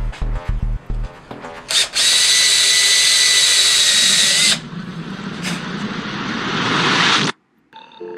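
Cordless drill boring into a ski's top sheet, as for a binding mount. It runs with a steady high whine for about two and a half seconds, then with a rougher sound that grows louder until it cuts off suddenly. A short music beat plays at the start.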